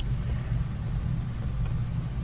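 Steady low background hum with a faint hiss, with no distinct events.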